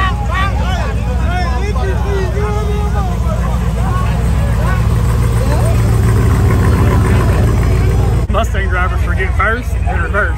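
Diesel truck engine running with a steady low rumble that swells louder through the middle, with people's voices over it. The sound breaks off abruptly about eight seconds in.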